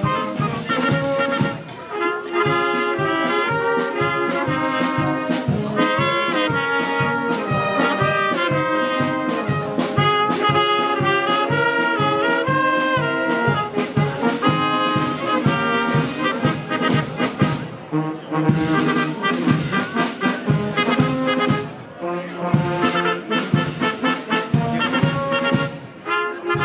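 Brass band music with a steady beat: several brass instruments playing a tune together over regular percussion strokes.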